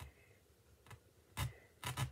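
A few short scrapes and rubs of small craft pieces being handled, with two louder strokes in the second half.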